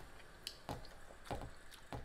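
Faint eating sounds: a few soft, separate clicks and squishes of chewing and handling food.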